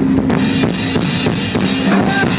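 Rock drum kit played live with rapid, dense strokes on the bass drum, snare and toms, over a steady low ringing tone.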